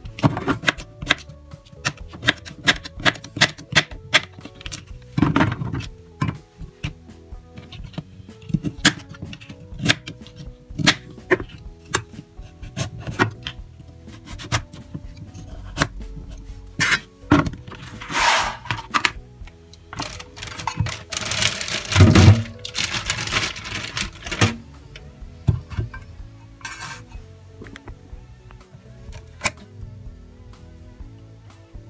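Knife chopping zucchini and carrot on a cutting board: many sharp, irregular taps. Soft background music plays underneath. A louder stretch of noise comes a little past the middle.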